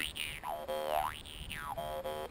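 Jaw harp played in a steady twanging drone, its overtones sweeping slowly up and down as the player reshapes his mouth.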